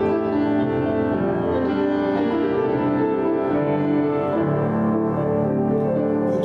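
Grand piano playing, its notes held and overlapping as the chords change.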